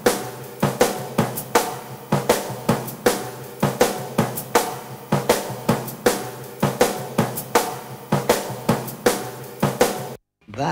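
Drum kit played in a fast, steady rhythm: snare and bass drum hits with cymbals and hi-hat ringing over them.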